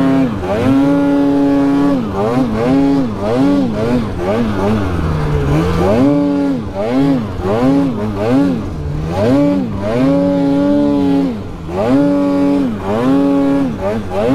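Polaris 9R snowmobile's two-stroke twin engine under constant throttle work, revving up and dropping back again and again, roughly once a second, with a few stretches held at high revs for a second or more.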